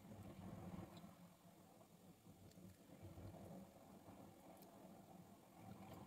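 Near silence: faint room tone with a couple of faint ticks.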